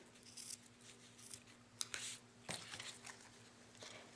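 Scissors snipping off the end of a narrow stitched ribbon: a faint, sharp snip near the middle, among quiet rustles of ribbon and card stock being handled.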